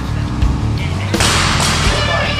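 Background music, over a loaded barbell with bumper plates dropped to a gym floor from overhead: a heavy thud about half a second in and a second crash a little after a second in.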